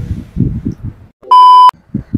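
A short electronic beep: one steady tone at about 1 kHz, very loud, lasting under half a second and cutting off abruptly.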